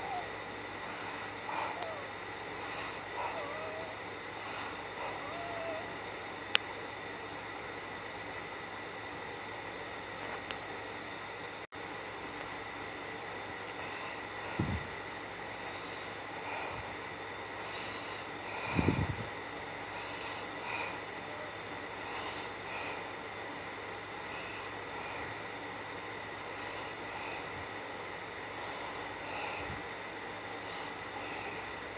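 Spirit box radio sweep: steady static with faint, choppy snatches of voice near the start, a sharp click about six seconds in and two short low thumps later on.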